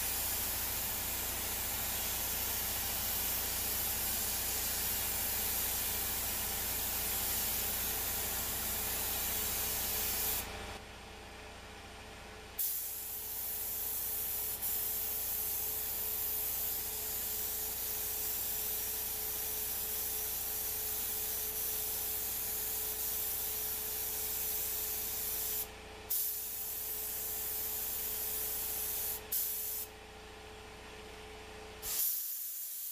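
Top-cup LVLP spray gun hissing as compressed air atomises gold paint onto a motorcycle frame. The hiss runs in long passes, with the trigger let off for about two seconds near the middle and briefly near the end.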